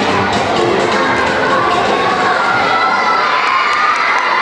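An audience, largely children, cheering and shouting all at once, loud and sustained.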